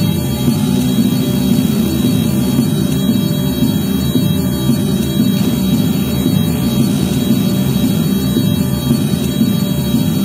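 Electronic music played on an ARP 2600 analog synthesizer: a loud, dense low drone that holds steady throughout, with a restless, shifting texture and no clear beat.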